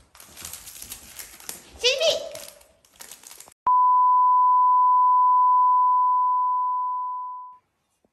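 An electronic censor-style bleep: one steady tone at about 1 kHz that cuts in suddenly about halfway through, holds for about four seconds, and fades out near the end.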